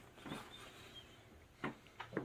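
Quiet chewing of a mouthful of taco with the mouth closed, with two short soft smacks, one early and one near the end.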